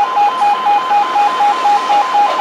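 Level crossing audible warning alarm sounding a two-tone warble that switches rapidly between two pitches, while a train passes over the crossing.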